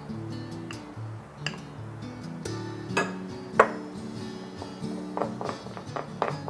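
Background music with a few sharp clinks and knocks of a spatula against a glass mixing bowl as butter is scraped in and creamed; the loudest knocks come about three and three and a half seconds in.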